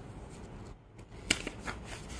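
Printed paper sheets being handled and turned: a quick run of crisp rustles and snaps starting a little past halfway, the first one the loudest.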